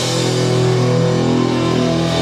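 Live heavy metal band through a loud PA: distorted electric guitar and bass hold one long ringing chord, the busy drumming of a moment before having given way to the sustained notes.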